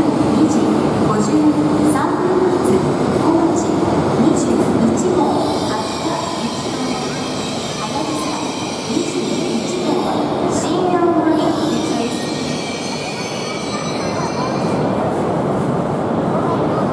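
Tohoku Shinkansen trains running slowly through the platform, with a high-pitched squeal through the middle as a green-nosed set pulls in. Voices of onlookers are heard over the train noise.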